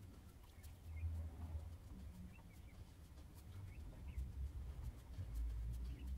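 Faint sounds of a fineliner pen inking lines on paper: light scratchy ticks with low bumps from the drawing hand on the desk, loudest about a second in and again near the end.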